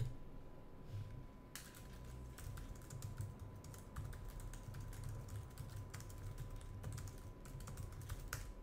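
Faint, irregular typing on a computer keyboard, the keystrokes starting about a second and a half in, picked up by a desk microphone.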